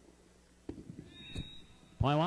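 Jai-alai rally sounds on the court: a sharp knock about two-thirds of a second in and another a little past halfway, with a short high squeak between them.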